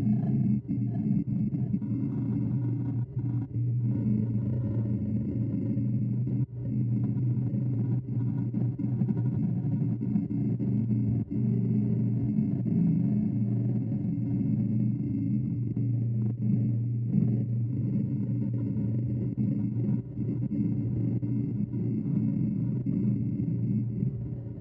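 Laguna REVO 18|36 wood lathe running with a steady low hum while a bowl gouge cuts the inside of a hickory bowl, with a few brief breaks where the tool comes off the wood.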